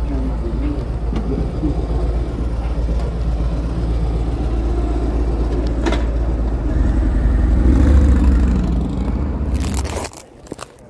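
Street traffic noise with a heavy low rumble of wind on the microphone, swelling louder around eight seconds in as a vehicle passes, with a single sharp click a little before.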